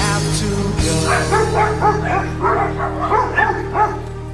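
A dog yipping in a quick run of short, high calls, about four or five a second, starting about a second in, over music with steady held notes.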